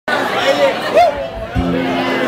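Voices chattering in a bar room, then an acoustic guitar is struck about one and a half seconds in and rings on a sustained note.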